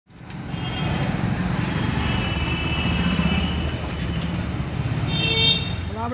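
Motorcycle engine running close by as it passes through a narrow lane, with a short vehicle horn toot about five seconds in.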